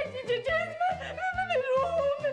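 Music: a single voice singing a wavering, sliding, yodel-like melody over a steady beat.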